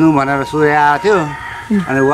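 A man talking in a steady, animated voice, with a faint constant high tone underneath.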